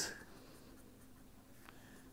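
Faint scratching of a pen writing on paper, with a small click near the end.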